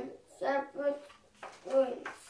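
A young child reading aloud slowly, a few words with pauses between them.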